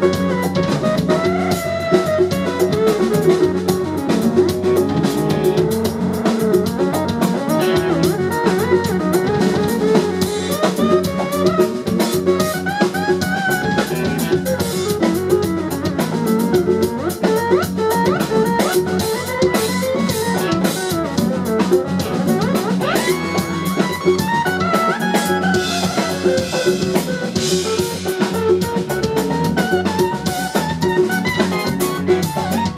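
Funk band playing live: electric guitar lead lines over drum kit, bass, keyboards and congas, with some notes gliding in pitch in the second half.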